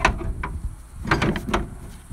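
A few sharp knocks and scrapes, with a cluster of them past the middle, as things are handled and moved about.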